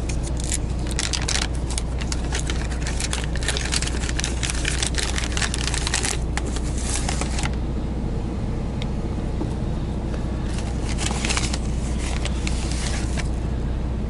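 Foil coffee bag being torn open and crinkled by hand, crackling for the first half and again near the end, over the steady low drone of an idling semi truck.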